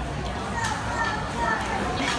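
Background chatter of a busy food court: indistinct voices of other diners, children's among them, over a steady room hubbub.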